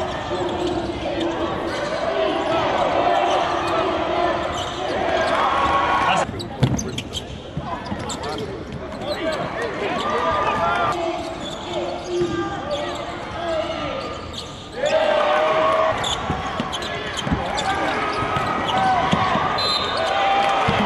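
Live basketball game sound in an arena: the ball bouncing on the hardwood court amid a murmur of voices and crowd noise, with sudden changes in level where clips are cut together.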